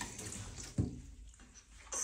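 Soft water sounds of a baby being washed by hand: light splashing and dripping as wet skin is rubbed, with one short, louder splash or thump a little under a second in.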